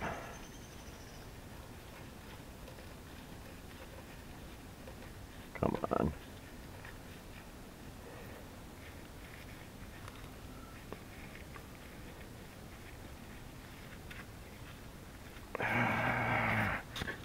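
Quiet room tone with faint small clicks of a hydraulic hose fitting being handled and threaded by hand onto a backhoe control valve. A short grunt-like vocal sound comes about six seconds in, and another about a second long near the end.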